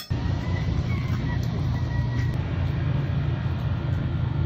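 Outdoor street noise: a steady low rumble that starts abruptly and runs without a break.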